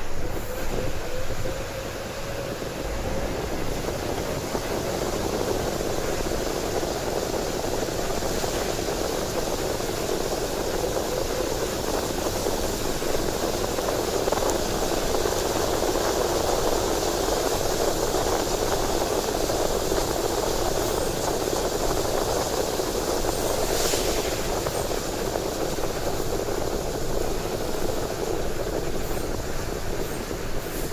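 Steady running noise of a road vehicle in motion, heard from inside: engine and tyres on a wet road.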